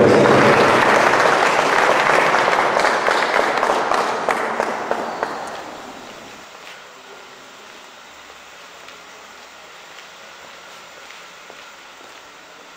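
Audience applause at the end of a song, dying away about halfway through and leaving only a faint background.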